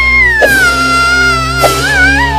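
A baby's long, high-pitched crying wail that slides slowly down in pitch and holds on without a break, over background music. Two short sharp taps sound about half a second in and near the end.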